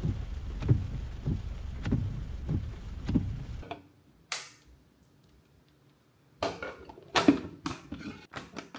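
Low outdoor rumble with soft regular thumps a little under twice a second, then, after a cut, a quiet kitchen: a short scraping hiss and a run of sharp clicks and clatters as a plastic slicer lid is fitted onto a clear plastic bowl.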